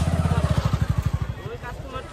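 A motorcycle engine passes close by, a fast, even low throb that is loudest in the first second and fades away about a second and a half in.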